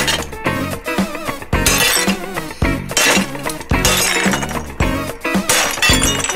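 A ceramic plate breaking under repeated hammer blows, with shards clinking, over upbeat background music with a steady beat.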